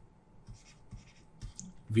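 Faint scratches and light taps of a stylus on a tablet as a short expression is handwritten, in several short strokes.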